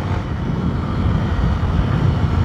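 Honda XRE single-cylinder motorcycle engine running steadily while riding along at low speed.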